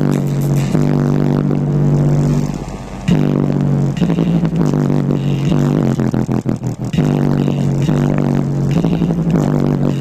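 Loud music with heavy, sustained bass notes played through a car stereo's pair of 10-inch Alpine Type-R subwoofers in a ported D-slot box, heard inside the car.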